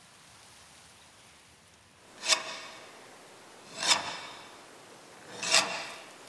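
Three rasping scrape strokes about a second and a half apart, each swelling to a sharp peak and then trailing off.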